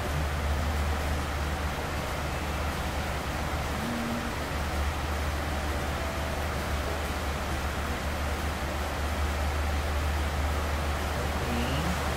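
Room air conditioner running: a steady low hum under an even hiss.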